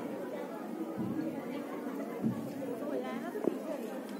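Indistinct chatter of many young women's voices talking at once, with no single clear speaker.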